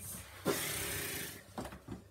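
A child dropping onto a rubber-matted floor: a soft thump about half a second in, then about a second of rustling that fades, with a few light knocks near the end.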